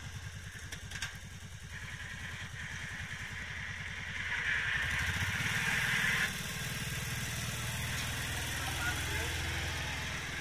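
ATV engine running under load while it pushes snow with a front plough blade, a steady low throb. About four and a half seconds in it gets louder, with a hiss, then drops back a little after six seconds.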